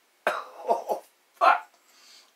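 A man coughing in a short bout: a few quick coughs, then one more after a brief pause.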